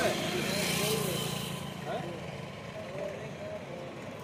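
Faint background voices over a low engine hum that fades away about a second and a half in.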